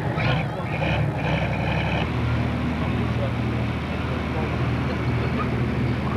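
Pro Stock pulling tractor's turbocharged diesel engine idling steadily, its tone shifting to a different steady pitch about two seconds in, with a faint PA voice in the background early on.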